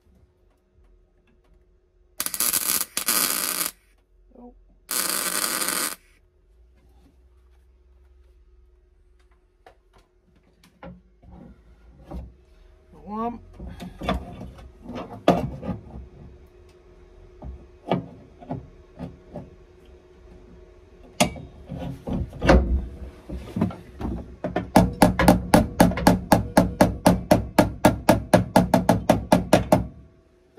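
Two short bursts of MIG welding crackle a couple of seconds in: spot welds tacking a steel seat belt anchor to a car's inner sill. Scattered knocks follow, then near the end a fast run of hammer blows on sheet steel from a body hammer, about five a second.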